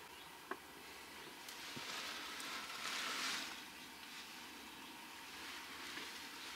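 Faint rustling that swells and fades in the middle, with a light click about half a second in.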